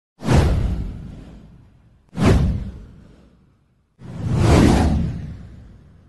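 Three whoosh sound effects about two seconds apart. The first two hit suddenly and fade away, and the third swells in more gradually before fading.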